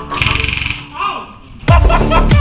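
A short burst of rapid full-auto fire from an airsoft electric rifle, lasting about half a second, over background music. Near the end the music breaks into a loud electronic beat whose kicks drop in pitch.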